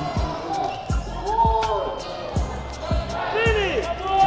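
Basketball shoes squeaking in short chirps on a hardwood gym floor as players jostle under the basket, with the low thuds of a basketball bouncing several times.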